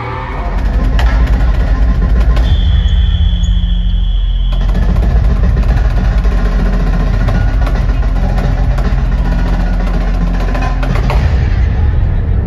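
Marching snare drum played in quick strokes over loud music with a heavy bass.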